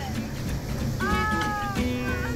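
Country-style background music with a long held, slightly falling note about a second in.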